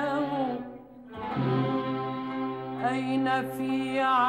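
Arabic classical orchestra with violins, cellos and double bass playing an instrumental passage. A phrase ends and the music drops away briefly just before a second in, then the strings come back over a held low note with a wavering melody above it.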